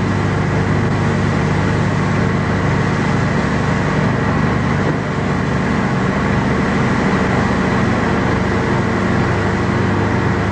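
A loud, steady rushing noise with a low hum underneath, even throughout with no distinct events.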